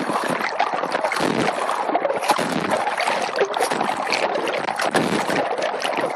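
Sea water splashing and churning right at a camera held at the surface as a swimmer takes front-crawl arm strokes, a continuous, loud, irregular wash of splashes.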